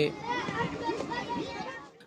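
A crowd of children's voices chattering and calling at once, fading out near the end.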